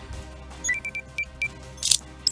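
News transition sound effect over a steady music bed: a quick run of about six sharp clicks with short high beeps, then a brief burst of noise near the end.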